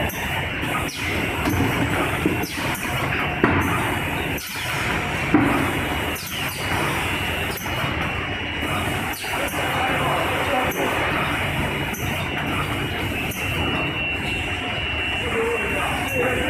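Delta-robot case packing line running: a dense steady machine noise with a thin high whine through it and two brief knocks, about three and a half and five seconds in.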